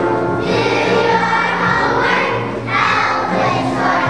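A kindergarten children's choir singing a song together in unison, over a musical accompaniment with sustained low notes.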